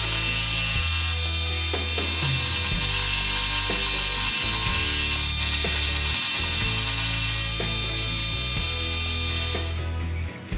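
Small milling machine face-milling an aluminum billet, its sound played back about ten times fast, over background music. The machining sound cuts off suddenly just before the end.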